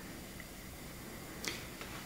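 A pause in a man's speech: low, steady room noise with one soft, brief click about one and a half seconds in.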